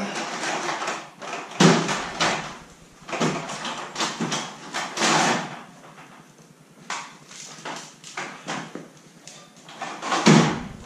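An aluminium ladder being shifted and handled: irregular knocks, scrapes and rattles of metal, the loudest about one and a half seconds in and again about five seconds in.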